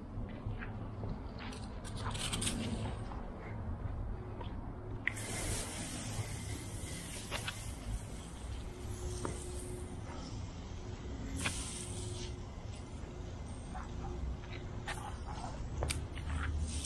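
Soft-wash spray wand misting post-treat bleach solution onto concrete, a steady hiss that starts about five seconds in, over a steady low rumble. The spray is weak: the pump is running low in volume.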